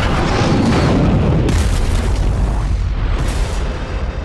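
A jet aircraft passing low and fast, a loud, deep roar and rumble that hits suddenly and slowly eases, mixed with a cinematic boom.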